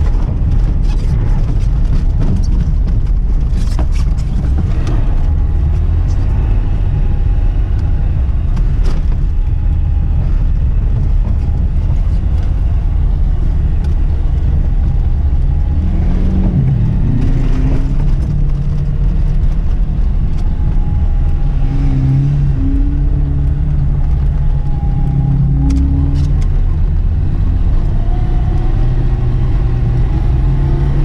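Inside the cabin of a classic Lada Zhiguli, its inline-four engine running hard on a rough snowy track, the revs rising and falling and climbing about halfway through. Scattered knocks and thuds come from the car going over the bumpy surface.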